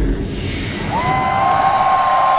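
Rock-concert arena crowd cheering and screaming as the metal song ends. About a second in, a steady high two-note tone comes in and holds over the cheering.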